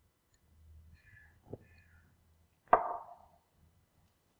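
Faint low room hum, a small click about a second and a half in, then one sharp knock near three seconds in that rings briefly.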